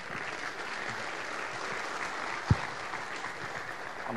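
Audience applauding steadily, with a single low thump about halfway through.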